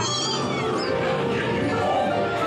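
Dark-ride soundtrack music playing, with short high, gliding, voice-like sounds near the start and again partway through.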